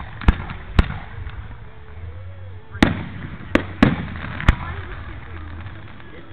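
Fireworks display going off: six sharp bangs, two in the first second and four more between about three and four and a half seconds in.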